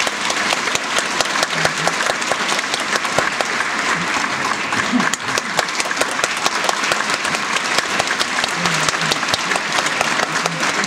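Theatre audience applauding steadily, many hands clapping at once, with a few voices calling out over it.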